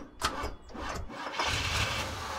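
A van engine starting: a click and some cranking, then from about a second and a half in the engine catches and runs with a steady low rumble.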